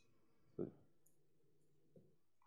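Near silence: room tone, with one brief soft sound about half a second in.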